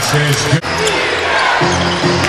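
Basketball arena sound during a game: crowd noise with a ball dribbling on the hardwood court. The sound drops out abruptly for an instant about half a second in.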